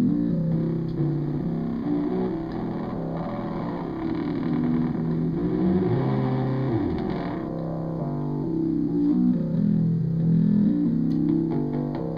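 Live improvised electronic music from a Korg Monotribe analog synth, a Korg Kaossilator touchpad synth and sounds played off a phone: distorted, droning tones that shift in pitch, with a falling pitch sweep about six to seven seconds in. Near the end a fast ticking rhythm comes in.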